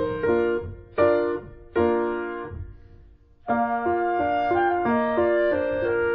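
Background piano music. Two chords are struck about a second apart and left to ring out into a brief pause, then a gentle, even run of notes starts up again.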